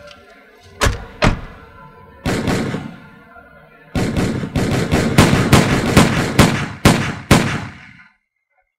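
A series of heavy thuds and knocks: two sharp knocks about a second in, a short noisy burst, then, from about halfway, a dense run of loud blows that stops abruptly near the end.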